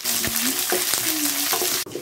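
Onions, peanuts, curry leaves and dried red chillies sizzling in hot sesame oil as they are stirred in a steel kadai. The sizzle cuts off suddenly near the end.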